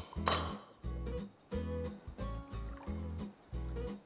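Background music with a steady bass beat. Just after the start comes one brief clink from small glass prep bowls.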